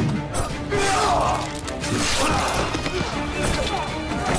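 Background music over a sword fight: metal blades clashing and striking in sharp hits, with men shouting as they fight.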